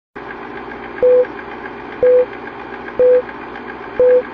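Film-leader countdown sound effect: a short, loud beep once a second, four times, over the steady clicking clatter of a film projector running.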